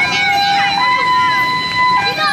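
A two-tone siren switching between a lower and a higher note, with the change just under a second in, over the voices of a crowd talking.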